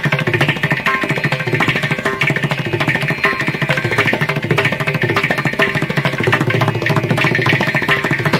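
Carnatic concert accompaniment without singing: mridangam and ghatam playing fast, dense strokes over a steady tanpura drone.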